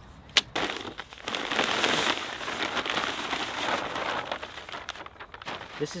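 A spade chopping into and turning a cob mix of coarse building sand, clay and straw in a wheelbarrow: a sharp strike about half a second in, then a few seconds of gritty crunching and scraping.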